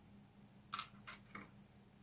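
Three faint, light clicks as small metal tools and parts are handled, about three quarters of a second in and twice more shortly after; otherwise near silence.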